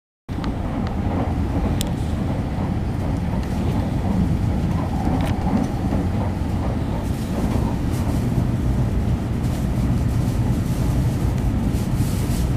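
N700-series Shinkansen heard from inside the passenger cabin: a steady low rumble of wheels on rail and running gear, with a few faint ticks.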